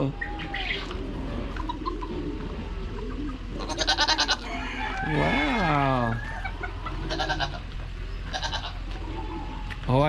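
A young goat bleating, one long call that rises and then falls in pitch about five seconds in. Short bursts of rapid, high pulsing calls from farm birds come just before it and again later.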